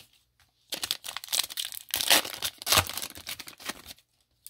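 Panini Playoff football card pack wrapper crinkling and tearing as it is ripped open, a run of crackly rustles starting under a second in and stopping just before the end.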